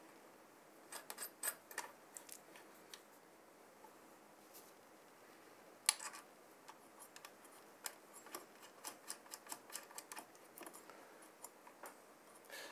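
Faint small clicks and ticks of threaded mounting caps being turned down by hand onto the bolts of a CPU cooler's mounting bracket: a few clicks about a second in, a sharper one midway, then a run of small ticks near the end.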